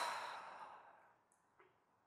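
A woman's sigh into a close microphone: one breathy exhale that fades away within the first second.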